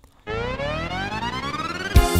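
An ELF 707 karaoke accompaniment machine starting a song on its own built-in sounds: after a brief silence, one tone rich in overtones glides steadily upward in pitch.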